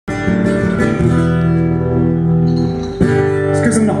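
Amplified acoustic guitar strumming sustained, ringing chords, changing chord about a second in and again at three seconds. A man's voice comes in near the end.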